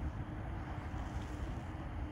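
Wind rumbling steadily on the microphone, with a faint steady hum underneath.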